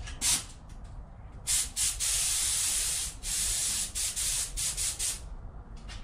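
Compressed-air paint spray gun spraying the Chevy 327 engine, hissing in trigger pulls: a short blip at the start, one long pass of about a second and a half, then a string of shorter passes.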